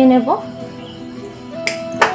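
A sharp click near the end from a hand-held spark gas lighter being struck at a gas stove burner to light it, over background music with sustained notes.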